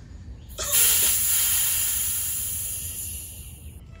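Pressurised air hissing out of a Fox 36 mountain-bike fork's air spring through its valve: it starts suddenly about half a second in and fades steadily over about three seconds until it stops, the fork being deflated from about 100 psi before its air cap is unscrewed.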